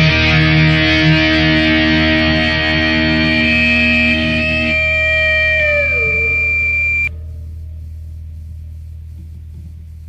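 Distorted electric guitar ringing out a final sustained chord at the end of a rock song. About five seconds in its notes bend downward in pitch, and just after that the chord cuts off suddenly. A low steady hum is left, fading away.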